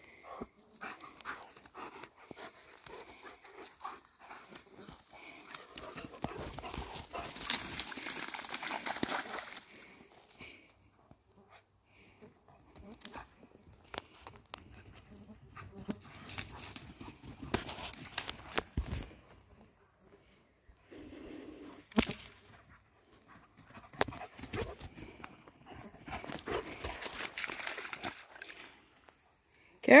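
A Great Pyrenees and a pyredoodle play-fighting: scuffling, rustling through grass and brush, and dog vocal sounds, coming in irregular spells with quieter gaps between.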